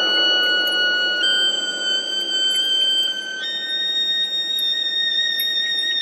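Contemporary chamber music for clarinet, alto saxophone and electronic fixed media: a very high, piercing held note, steady and without vibrato, stepping up in pitch about a second in and again midway, over a faint low hum.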